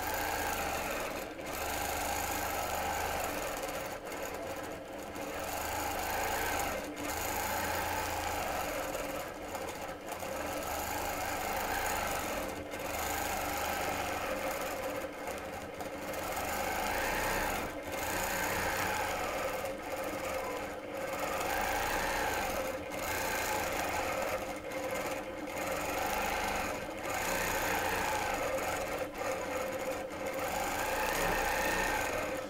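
Longarm quilting machine stitching continuously, its sound swelling and easing every second or two as the stitching runs around the feather fronds.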